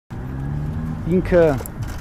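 A man's voice speaking, opening with a steady held low tone before a short run of words.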